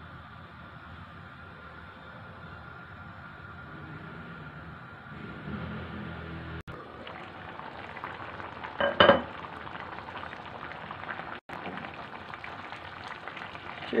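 Water boiling in a pot of rice with carrots and peas, a steady bubbling hiss as it comes to a full boil. One brief louder sound about nine seconds in.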